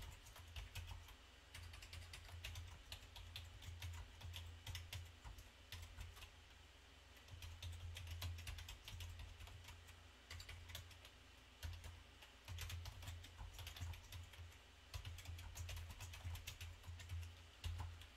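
Quiet typing on a computer keyboard: fast runs of keystrokes with short pauses between words and phrases.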